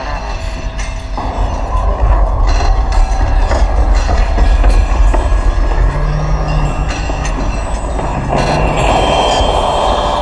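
Experimental electronic noise music: a loud, dense rumbling texture over a deep low drone. A harsh hissing layer comes in about a second in and swells again near the end, and short low hums surface around the middle and near the end.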